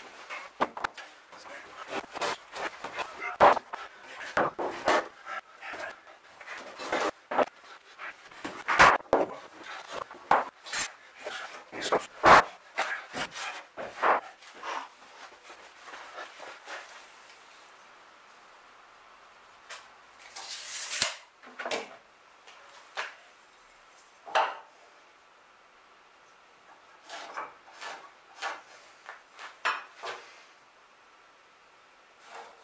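Long lengths of sawn mast timber being lifted, set down and shifted against each other on a bench: a dense run of wooden knocks and thuds for about the first fifteen seconds, a short scrape about twenty seconds in, and a few more knocks near the end.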